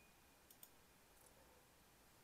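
Near silence, with two faint computer mouse clicks close together about half a second in.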